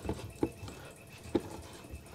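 A few faint clicks of a screwdriver working the mounting screws of a wall-mounted RV propane/CO detector.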